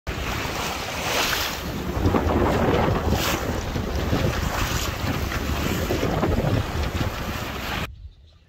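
Wind buffeting the microphone over the rush of waves and water along the hull of a sailboat under sail, with a few louder surges; it cuts off abruptly near the end.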